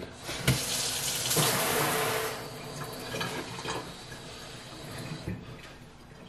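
Kitchen tap running water over a paper-towel-wrapped sweet potato held under it at a stainless steel sink, to soak the towel. The flow is strongest in the first couple of seconds, then quieter, dying away near the end.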